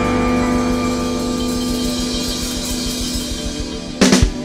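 Electric blues band holding a closing chord: electric guitar and bass sustain one chord while cymbals wash, the sound slowly dying away.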